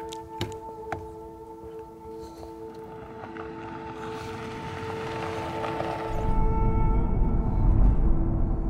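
Music with sustained tones under two sharp clicks near the start, then a hissing swell that builds over a few seconds. From about six seconds in, the loudest thing is a steady low rumble: a Toyota 4Runner SUV driving, heard from inside the cab.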